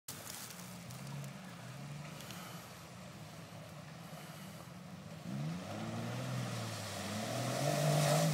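A Jeep's engine pulls through a deep water crossing. It runs low at first, then revs up about five seconds in and grows louder as it comes closer, with water splashing toward the end.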